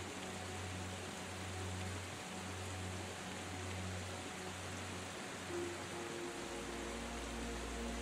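Quiet ambient meditation music: low sustained notes that swell and fade gently, over a steady hiss. A higher note comes in about five and a half seconds in, and a deeper drone shortly after.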